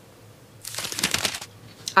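A person taking a sip from a glass: a short, noisy slurp of just under a second, followed by a light click near the end.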